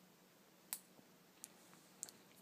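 Near silence: quiet room tone with a few faint, short clicks, the clearest just under a second in.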